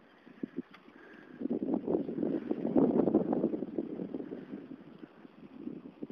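Wind buffeting the microphone of a camera carried on a moving bicycle, a rough crackling rumble that builds up about a second and a half in, peaks in the middle and then fades, after a few faint clicks at the start.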